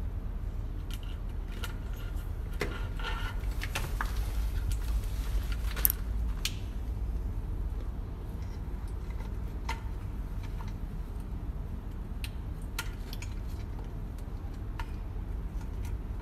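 Scattered light clicks and small metallic rattles from an LED grow light board, its hanging wires, ring hooks and power cables being handled, the sharpest click a little before the six-second mark, over a steady low rumble.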